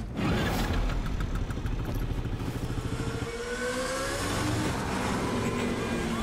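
Moped engine running and revving, its pitch rising in long sweeps.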